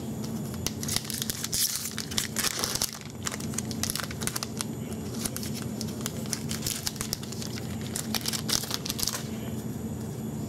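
Foil trading-card pack wrapper crinkling and being torn open by hand, in irregular crackles that grow louder about two seconds in and again near the end.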